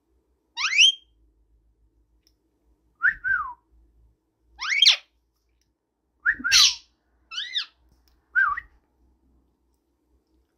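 Indian ringneck parakeet giving about six short whistled calls a second or so apart, some sweeping quickly upward in pitch, others arching or dropping.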